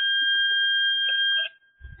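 A steady high-pitched electronic tone with a fainter overtone an octave above, held at one pitch and cutting off suddenly about a second and a half in.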